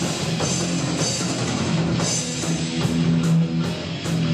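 Heavy metal band playing: electric guitars and bass over a drum kit, with regular cymbal strikes from about halfway through.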